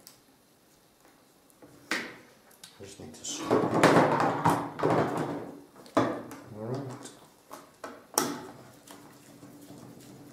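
Workshop handling sounds: a plastic angle strip and its handle being shifted and knocked on a bench while a screw is turned in with a hand screwdriver. There are sharp knocks about two, six and eight seconds in, and a busier stretch of scraping and rattling around the middle.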